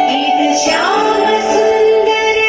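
A female voice singing a melody over instrumental accompaniment.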